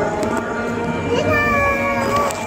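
Devotional bhajan-kirtan singing carried in from outside, with a long held high sung note starting about a second in.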